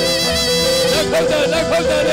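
Traditional Burmese Lethwei fight music: a reedy hne shawm playing a held, bending, ornamented melody over drums.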